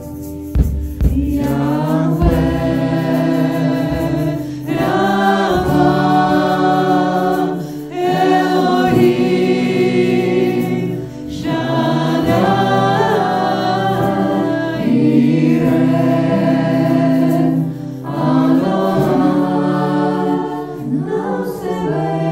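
Church worship team singing a slow worship song together in harmony through microphones, with acoustic guitar and keyboard accompaniment. The voices come in long held phrases of a few seconds each, with short breaks between them.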